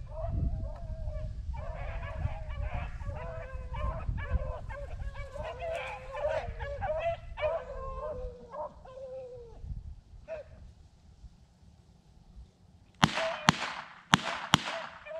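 A pack of beagles baying on a rabbit's trail, several hounds' voices overlapping over a low rumble, dying away after about ten seconds. Near the end there are two sharp knocks.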